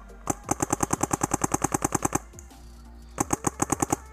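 Paintball marker firing in rapid strings at about ten shots a second: a long string of some twenty shots lasting about two seconds, then after a pause a second, shorter string of about eight shots near the end.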